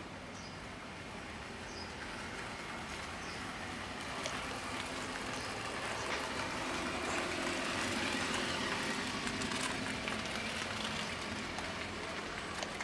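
A passing vehicle on the street: a broad rushing noise that swells slowly to a peak about eight seconds in, then fades. A few faint, short high chirps come in the first few seconds.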